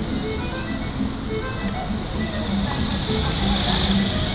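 A jingly merry-go-round-style tune of short repeating notes playing over a steady low rumble of city traffic, with a hiss building toward the end.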